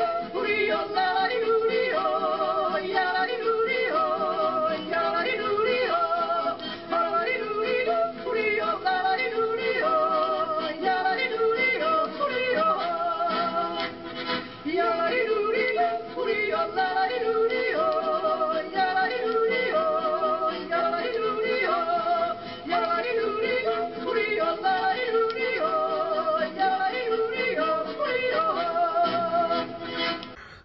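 Yodelling song: a singer's voice breaking quickly back and forth between low and high notes, with short dips between phrases.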